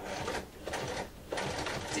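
Electric sewing machine running, stitching zipper tape to fabric with a zipper foot. It pauses briefly about halfway through, then starts again.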